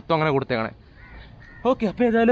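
A man's voice speaking in short bursts, with a brief pause in the middle.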